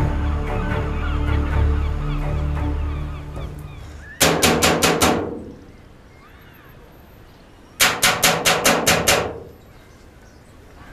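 Background music fading out, then two bouts of rapid, hard knocking on a door: about six knocks, a pause of a few seconds, then about eight more.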